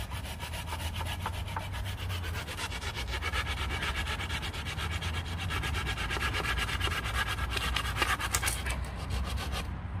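Hand saw cutting through a wooden pole in rapid, even strokes.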